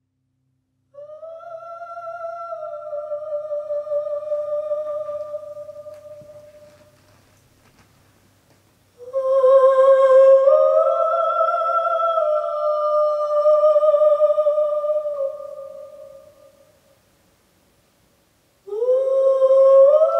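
A woman's voice singing long, held notes in three phrases, each sliding slightly in pitch and then fading out. The middle phrase is the loudest, and the third begins with a rising glide near the end.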